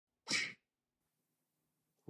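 A single short, hissy, breath-like burst about a quarter second in, lasting about a third of a second.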